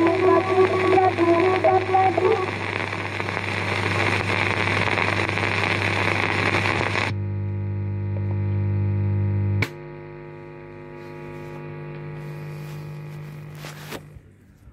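A woman's held, wavering sung notes at the close of an old devotional song recording fade out over the recording's hiss and a steady mains hum. About seven seconds in the hiss cuts off suddenly, leaving a buzzing hum; a sharp click a couple of seconds later drops it to a lower, quieter hum.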